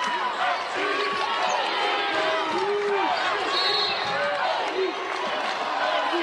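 Basketball arena during live play: a ball dribbling on the hardwood court under many overlapping shouting voices from the crowd and players.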